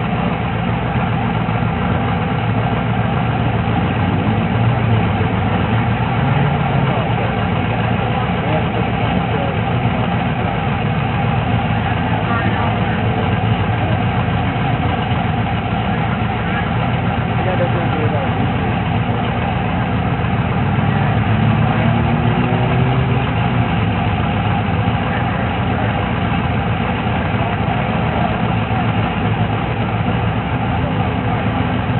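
Drag-race car engines idling steadily at the starting line, a continuous low rumble with no revving or launch, with voices in the background.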